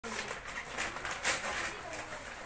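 Crinkly gift wrapping, tissue paper or cellophane, rustling as it is pulled out of a gift box, in irregular bursts that are loudest a little after a second in.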